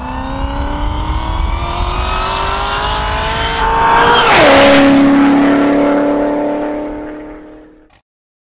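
A car engine accelerating, its pitch climbing steadily for about four seconds, then dropping suddenly with a short hiss at the loudest point and holding a steady lower note as it fades out.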